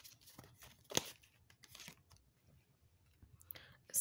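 Tarot cards being slid off a deck and laid down on a cloth: short faint scrapes and snaps, the sharpest about a second in, then a brief lull and a few small clicks near the end.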